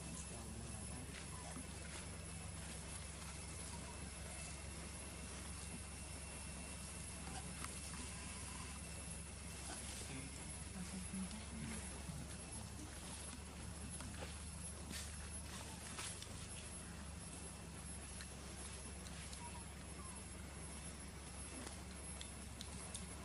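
Faint outdoor background: a steady low hum with scattered light clicks and taps.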